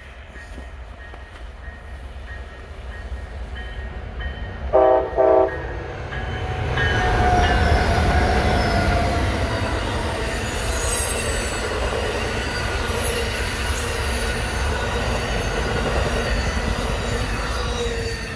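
Amtrak Empire Builder passenger train passing close by: two short horn blasts about five seconds in, then the diesel locomotive and bi-level Superliner cars roll past with a deep rumble of wheels on the rails and high wheel squeals.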